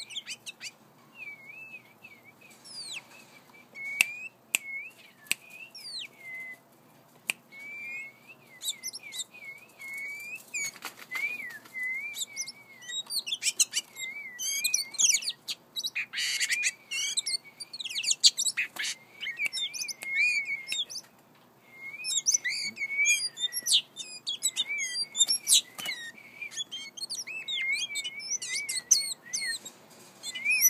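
Oriental magpie-robin singing softly and almost without pause: a wavering, repeated warble with bursts of quicker, higher twitters, and a brief lull a little past two-thirds of the way in. Sharp clicks are scattered through it.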